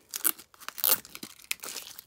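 Clear plastic shrink wrap being torn and pulled off a K-pop album, crinkling and crackling in irregular bursts, loudest about a second in.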